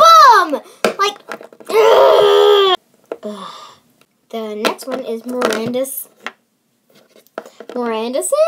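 A young girl's voice making wordless cries and exclamations: a falling squeal at the start, a long strained wail about two seconds in, then a run of short voiced sounds, with pauses between.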